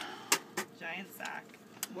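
A few short, sharp crackles of a folded paper slip being handled and opened, under low murmured voices.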